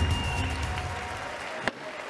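A news music sting fades out over a crowd applauding, with a few separate sharp claps near the end.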